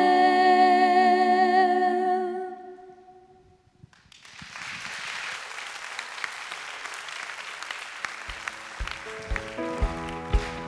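Three women's voices singing a cappella hold a final chord with vibrato that fades out about three seconds in. About a second later audience applause starts and runs on, with low drum hits joining near the end as a band begins to play.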